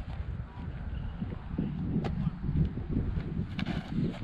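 Wind rumbling on the microphone, a steady low buffeting, with a faint tap about two seconds in.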